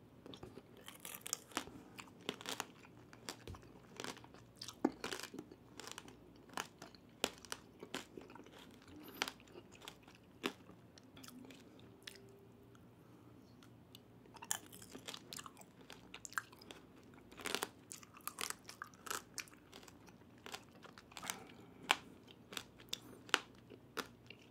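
Close-miked crunching and chewing of tanghulu, the thin hard sugar coating on candied cherry tomatoes cracking between the teeth. Irregular sharp crunches come with softer wet chewing between them, easing off for a few seconds in the middle.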